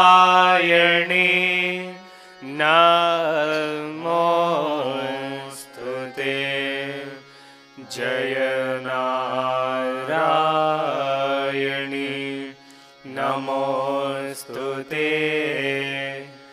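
Indian devotional hymn sung in long melodic phrases, with short pauses between phrases.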